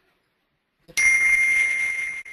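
A loud bell-like ding strikes about a second in and rings on at one clear, steady high pitch.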